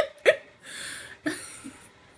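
A woman laughing: two short sharp bursts, then breathy gasps as the laugh dies away.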